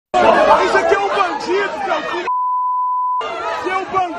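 A man shouting insults amid other voices. About two seconds in, a steady, one-pitch beep lasting about a second blanks out his words, a censor bleep over profanity, and then the shouting resumes.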